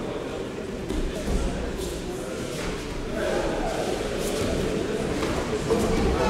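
Indistinct voices echoing in a large sports hall, with a few dull thuds about a second in.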